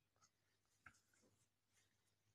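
Near silence: a pause in the recitation, with one faint click.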